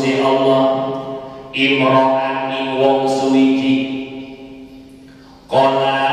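A man's voice reading Arabic text aloud in a chanting recitation, with long held, melodic phrases: one phrase ends about a second and a half in, the next runs on and tails off after about four seconds, and he starts again near the end.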